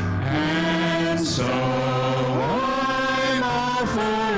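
Four singers, two men and two women, singing a closing hymn together into handheld microphones, holding long notes that step up and down in pitch.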